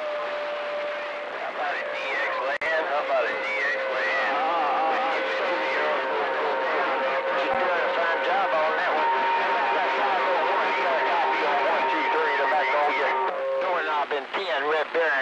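CB radio receiver on channel 28 playing several stations transmitting over one another: garbled voices buried in static, with steady whistles at several pitches coming and going as their carriers beat against each other.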